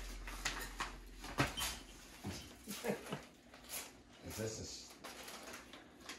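Quiet room with a few brief, faint voice sounds among light scattered rustles and clicks.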